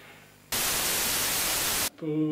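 A burst of TV-style white-noise static, edited in as a transition between scenes. It cuts in about half a second in at a constant level and cuts off abruptly just before the end.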